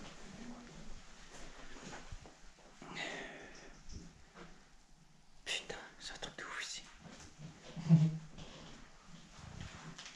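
Quiet whispering and low voices, with scattered rustles, clicks and light knocks from people moving through a cluttered room, and a brief louder low sound about eight seconds in.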